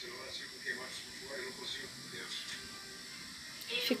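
Faint background broadcast audio, distant voices with music, playing low under the room. The woman's own voice starts just before the end.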